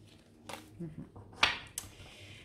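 Sharp snaps and taps of a deck of oracle cards being handled: a faint one about half a second in, the loudest about a second and a half in with a brief rustle after it, and a small one just after.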